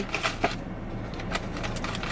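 Cardboard box and packaging of giant Pocky being handled as a hand reaches in to take out a stick: scattered light clicks and rustles.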